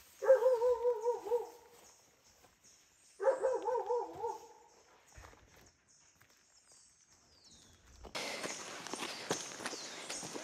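A dog gives two wavering, whine-like calls, each about a second and a half long and a couple of seconds apart. Near the end, footsteps on a gravel path begin.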